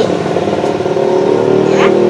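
An engine running steadily, a continuous droning hum with an even pitch. Near the end a single spoken "ya" is heard over it.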